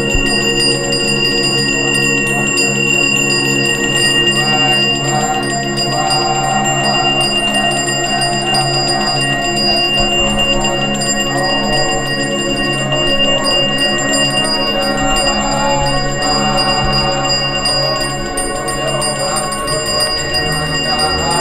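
Balinese priest's hand bell (genta) rung continuously, a steady high ringing, over a lower background of music with shifting tones.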